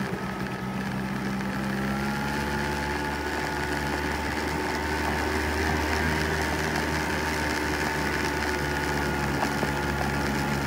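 A 49cc scooter engine running steadily while riding on a gravel road, its pitch rising a little in the first couple of seconds and then holding.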